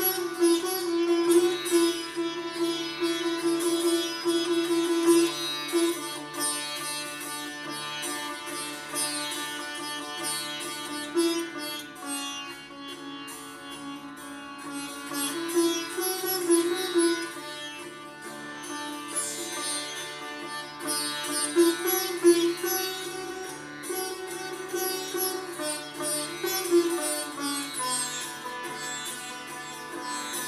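Solo sitar playing a plucked melody over a steady drone, with notes sliding and bending between pitches.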